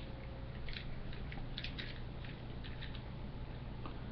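Faint handling noise: light rustles and small clicks scattered through, over a low steady hum.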